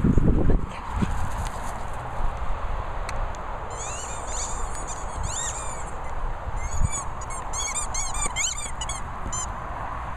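Rubber dog toy squeaking in quick clusters of short high-pitched squeaks as a dog chews it, starting about four seconds in and coming faster near the end. A loud knock on the microphone opens, over a steady low rumble of wind.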